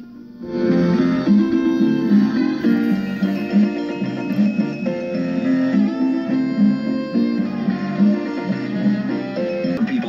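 A restored 1948 Westinghouse H104 tube table radio playing music from an AM station through its own speaker, the music coming in about half a second in as the dial is tuned. The sound is thin, lacking the highest treble.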